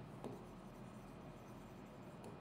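Faint sound of a pen on an interactive display screen as a word is handwritten, with a light tap about a quarter second in, over a low steady hum.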